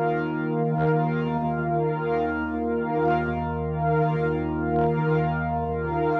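Behringer DeepMind polyphonic analog synth holding a sustained chord over a low drone, played through tape-echo, tremolo and fuzz guitar pedals; the low end pulses about once a second.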